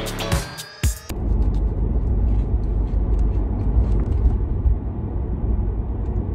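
A short burst of upbeat music cuts off about a second in, giving way to the steady low rumble of road and engine noise inside a moving car's cabin.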